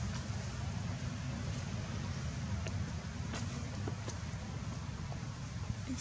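Steady low outdoor rumble with a few faint clicks about halfway through; no monkey calls stand out.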